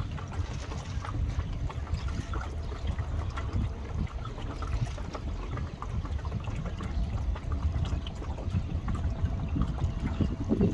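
Steady wind rumble on the microphone over a choppy lake, with small wind-driven waves lapping and trickling.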